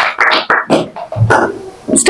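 A class of children clapping: a string of separate claps in a loose rhythm that thins out after about a second and a half.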